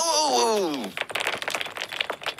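A cartoon character's voice crying out in one long downward-gliding wail, then about a second in a rapid, dense clatter of rattling clicks as objects shake and tumble over in a cartoon earthquake.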